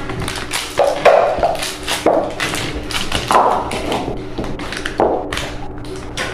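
Upturned plastic bowls being lifted, shifted and set back down on a tabletop to hide a bonbon: a string of light taps and knocks.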